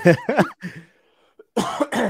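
Short burst of laughter, a brief silent pause, then a person clearing their throat with a cough about one and a half seconds in.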